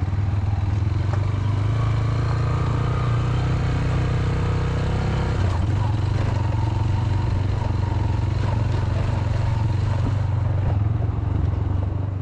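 Motorcycle engine running steadily while the bike rides along a rough dirt road, a constant low drone.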